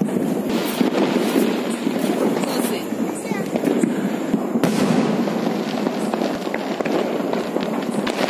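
Diwali aerial fireworks bursting and crackling, with many sharp bangs in quick succession. The loudest bang comes a little past halfway.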